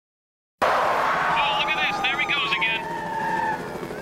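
Tinny, radio-style voice chatter over a steady noisy background, starting suddenly just over half a second in. A faint tone slides slowly down in pitch under it near the end.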